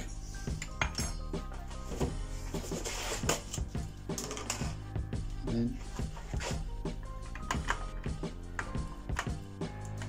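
Background music playing, with repeated small clinks of a fork and spoon against a stainless steel bowl and dishes.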